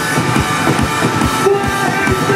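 Loud live rock band: distorted electric guitars holding sustained, droning notes over drums beating a fast, steady rhythm.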